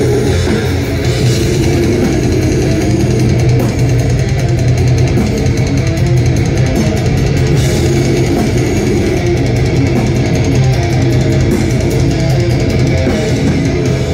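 Death metal band playing live through a PA: heavily distorted guitars, bass and drums, loud and unbroken. Fast, even drum and cymbal strokes run through most of the stretch.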